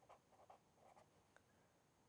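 Very faint scratching of a pen writing on paper: several short strokes in the first second or so, then quieter.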